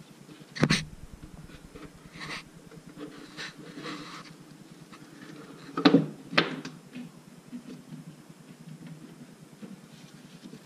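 A homemade taped glass-panel valve cover is handled and set down onto an engine's cylinder head. There is a sharp knock about half a second in, then two more knocks close together about six seconds in, with small clicks and rustling of handling between.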